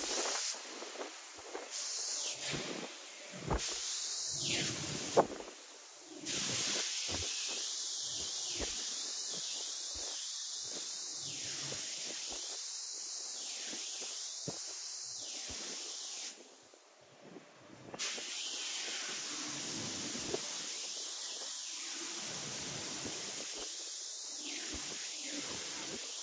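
Die-casting machine's multi-nozzle spray head spraying release agent into the open die, a steady hiss. It comes in short bursts over the first few seconds, then runs on with one brief pause about two-thirds of the way through.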